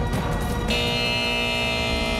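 Closing theme music of a TV talk show. A beat runs into a full held chord that comes in about two-thirds of a second in and sustains.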